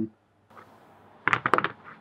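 A quick cluster of four or five light, hard knocks about a second and a half in: wooden knife-handle blocks being set down on the work mat and tapping together.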